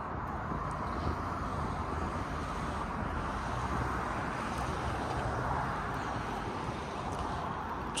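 Steady outdoor background noise of distant road traffic, a low even rumble with a faint hum that swells slightly mid-way.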